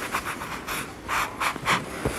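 Sponges rubbing across a large painted panel, wiping off chalk grid lines in short, uneven back-and-forth strokes, several a second.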